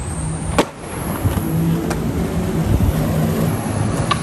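Skateboard on stone paving: one sharp clack about half a second in, then the low rumble of the wheels rolling that swells and fades.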